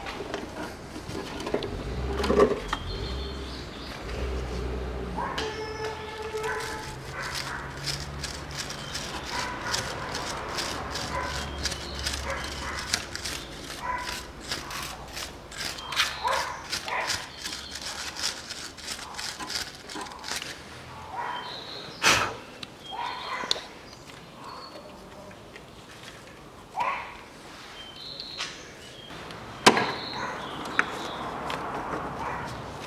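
Metal hand tools clicking and knocking against engine timing-belt parts, with a dense run of quick clicks in the middle and a few sharper knocks later on. A dog barks now and then in the background.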